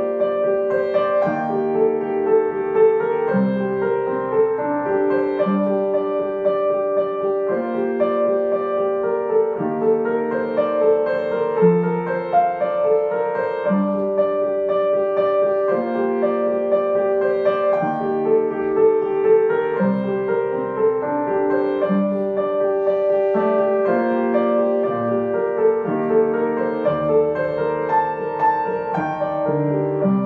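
Upright piano playing the accompaniment part of a flute piece on its own, without the flute: slow, sustained chords that change every second or two.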